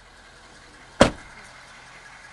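A pickup truck's front door slammed shut once, a single sharp bang about a second in.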